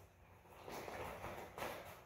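Faint rustling of jiu-jitsu gi fabric and shuffling feet as two grapplers let go of a standing guillotine and step apart.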